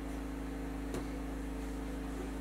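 Steady low hum, with one faint click about a second in as the camera's Arca-Swiss bracket is set into the tripod head's clamp.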